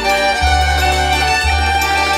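Belarusian folk dance music played by an instrumental folk ensemble, with a fiddle leading over the accompaniment and a bass note that changes about once a second.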